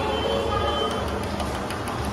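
Steady low hum of background machinery, with faint distant voices.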